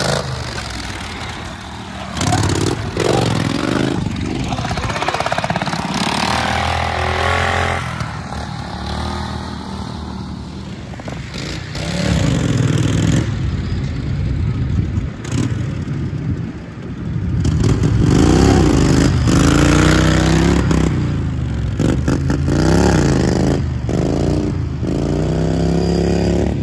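Four-wheeler ATV engines revving, the pitch climbing and falling again and again as the throttle is blipped and held.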